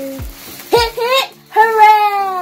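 A sparkler candle fizzing and crackling on a cake, under high voices. A held sung note ends just after the start, then two short calls and a long drawn-out cry that falls in pitch.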